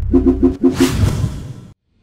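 Intro sting music for a logo animation: about five quick pitched percussion hits, then a rush of noise that fades out and cuts off to silence just before the end.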